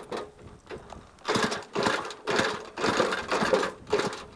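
Small moped being pedalled to start it: a rhythmic mechanical clatter from the pedal drive and turning engine, in bursts about twice a second beginning about a second in.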